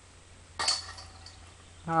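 Disc golf disc hitting the hanging chains of a disc golf basket and dropping in: one sudden metallic jingle about half a second in that rings on briefly, a made putt. A voice says "nice" near the end.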